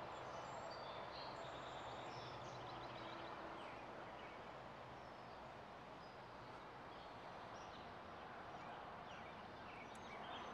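Faint outdoor ambience: distant birds chirping now and then over a low steady hum that fades out about two-thirds of the way in.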